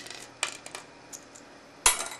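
Plastic clicker pen being handled against a metal vise: a few light clicks and taps in the first second, then one sharper click near the end.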